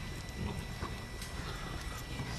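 A few faint, irregular footfalls and ticks from a dog running across artificial turf, over low steady room noise.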